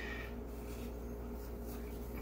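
Quiet room tone with a steady low hum, and a few faint light ticks as salt is sprinkled from a small bowl onto raw hen skin.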